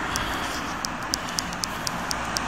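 Steady road traffic noise with a light, regular ticking of about four ticks a second.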